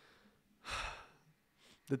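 A man's breath close to the microphone, heard as a sigh lasting a little over half a second, starting about half a second in.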